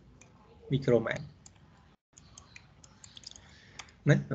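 Scattered light computer clicks, sharp and irregular, with a brief spoken sound about a second in.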